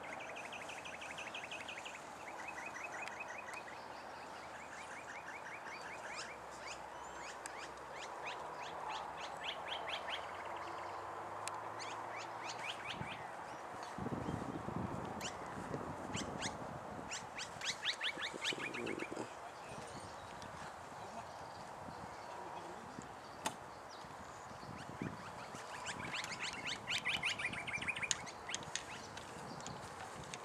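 Birds calling in repeated rapid chattering trills, coming in short bursts again and again.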